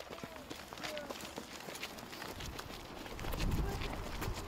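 Running footsteps of several runners, with faint voices in the background. A low rumble builds near the end.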